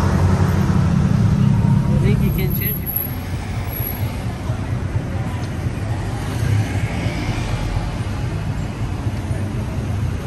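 City road traffic: motor vehicles, tuk-tuks and cars among them, running close by with a steady low rumble, loudest in the first three seconds, with people's voices around.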